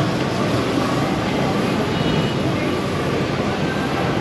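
Busy street ambience: steady traffic noise with the chatter of a passing crowd mixed in.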